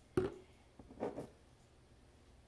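Small items being handled on a kitchen countertop: one sharp knock just after the start as a small bottle is set down, then a few softer clicks and taps about a second in as a spice jar is picked up.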